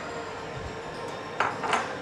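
Quiet kitchen-counter handling: soft clatter of dishes and utensils, with a couple of brief knocks about one and a half seconds in, over low room tone.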